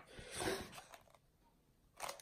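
A brief paper rustle from the pages of a spiral-bound songbook being handled and turned, about half a second in.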